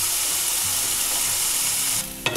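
Curry leaves, chopped onion and soaked dals sizzling in hot oil in a frying pan: the tempering being roasted, a steady hiss that cuts off suddenly at the end.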